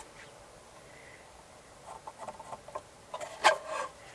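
Wood being handled on a table saw's steel top: a wooden ruler lifted off a board and the board shifted, giving a few soft taps and scrapes in the second half, the loudest a brief scrape a little after three seconds. The saw is not running.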